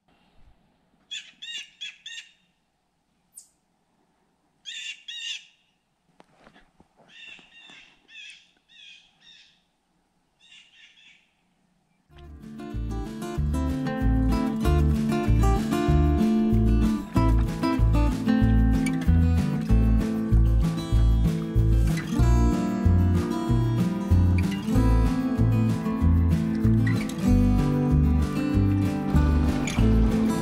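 A bird calling in short groups of rapid high notes, four or five times with quiet between. About twelve seconds in, background music with a steady beat starts and takes over.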